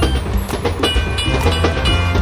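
Sound effect of a toy steam train running along its track, with a quick clickety-clack of wheels on the rails.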